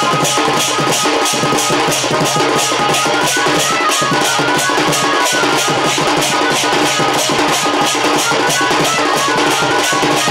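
Sambalpuri folk music for Danda dance: a barrel drum beating under quick, even metallic strokes and a held melodic line.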